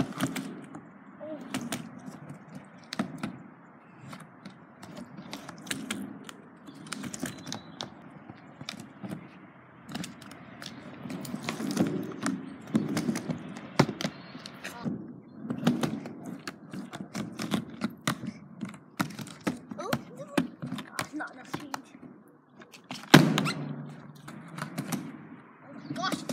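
Skateboard wheels rolling on a wet mini ramp, swelling and fading as the board goes back and forth, with frequent clacks and knocks from the board and trucks. One loud bang about 23 seconds in.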